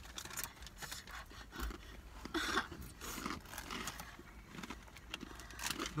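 Quiet, scattered crunching and crinkling as people eat spicy rolled tortilla chips and handle their chip bags, with a somewhat louder moment about halfway through.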